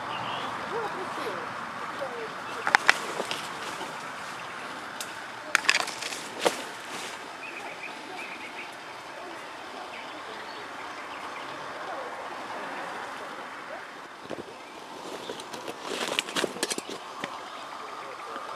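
Outdoor woodland ambience: a steady hiss with a few faint bird chirps. It is broken by short, sharp cracks and clicks in clusters about 3 and 6 seconds in and again around 16 to 17 seconds, like twigs snapping underfoot as someone walks along the path.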